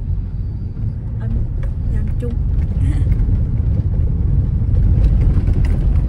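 Car tyre and road rumble heard inside the cabin, a low rumble growing louder, as the car drives over an uneven, ice-covered road surface that makes it shake.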